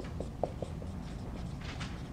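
Dry-erase marker writing on a whiteboard: a few faint taps and squeaks as a word is written.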